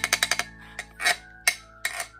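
Handheld wooden tone block struck with a wooden stick. A fast run of clicks comes first, then three single strikes, each leaving a short pitched ring.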